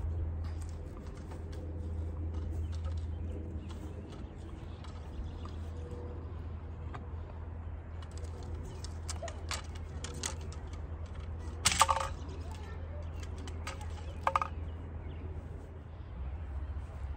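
Steady low wind rumble on the microphone outdoors, with scattered small clicks, a sharp snap about twelve seconds in and a smaller one a couple of seconds later.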